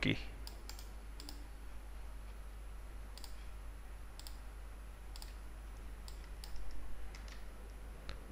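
Scattered faint clicks of a computer mouse and keys, with a small cluster of clicks near the end, over a low steady hum.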